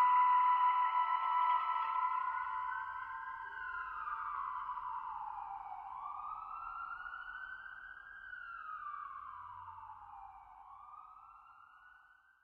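A siren wailing, its pitch slowly rising and falling in long sweeps of a few seconds each, fading out toward the end. The last of the music dies away in the first couple of seconds.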